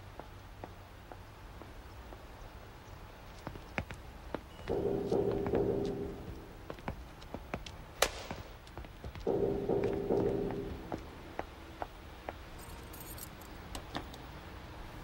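Hard-soled shoes walking on a concrete garage floor, as scattered small clicks. About eight seconds in comes a single sharp crack, the loudest sound, and about five and nine and a half seconds in there are two drones of about a second and a half each.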